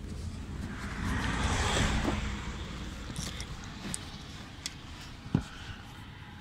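A car passing by: a low rumble and tyre hiss that swell up over about two seconds and fade away. A single sharp click comes near the end.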